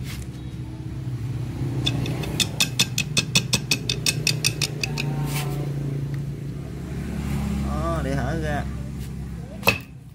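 A steady low motor hum with a quick run of sharp clicks, about five a second, from about two to five seconds in, and one sharp knock near the end.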